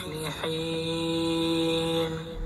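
Background music: a chanted vocal line holding one long steady note, stepping to a new pitch about half a second in.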